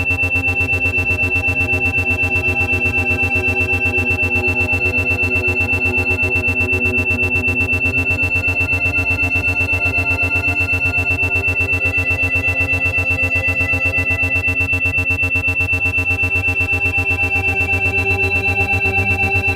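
Ambient synthesizer music with sustained low chords and a steady high tone, the whole sound pulsing evenly on and off: an 8 Hz isochronic beat for alpha-wave brainwave entrainment.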